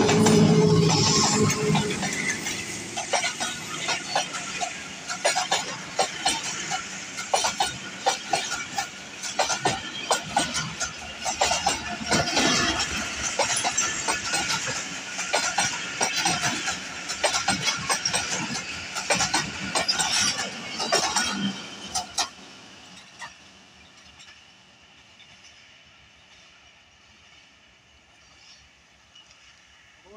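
A ZCU-20 diesel locomotive passes close with its engine running loud, then its passenger coaches roll by with a dense clatter of wheels over the rail joints. About two-thirds of the way through, the sound drops away suddenly as the last coach passes, leaving a faint distant rumble.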